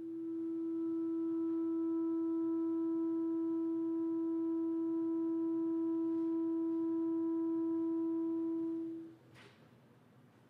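A clarinet holding one long, very steady note, with no vibrato, for about nine seconds before it stops cleanly. A brief hiss follows just after the note ends.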